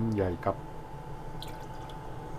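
A few soft drips as liquid from a small bowl falls into a frying pan of sauce, after a short spoken phrase at the start.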